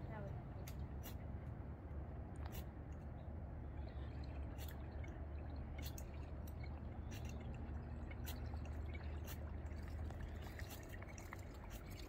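Quiet outdoor ambience: a steady low rumble with scattered faint clicks and drip-like ticks.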